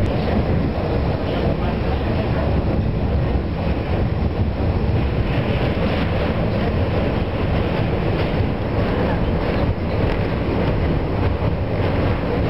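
Elevated subway train running across a steel bridge, heard from inside the car: a loud, steady rumble of the wheels on the track.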